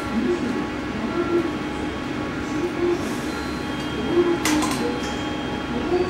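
A JR Central 211 series electric train standing at a station platform before departure. A low tone repeats about every three-quarters of a second, and a short, sharp burst of hiss comes about four and a half seconds in.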